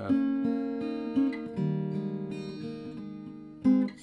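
Ibanez AEG10 acoustic-electric guitar in DADGAD tuning, played through a small 15-watt amp. A picked chord rings out, a new chord comes in about one and a half seconds in and slowly fades, and a short strum sounds near the end.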